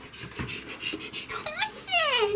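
A person's voice making short, breathy panting sounds, then a high-pitched vocal squeal that falls in pitch near the end.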